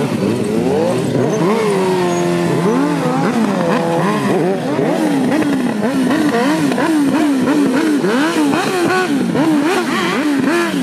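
Stretched-swingarm sport motorcycles revving hard while drifting on spinning rear tyres. Several engines overlap, their pitch sweeping up and down about twice a second, and one engine is held at a steady note between about two and three seconds in.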